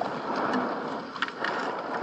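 Steady rushing noise of wind and water, with one brief faint click just after a second in.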